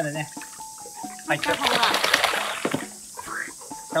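Water splashing and sloshing in a shallow tarp-lined pool as a yellow Labrador wades through it. It is loudest in one burst of about a second and a half in the middle.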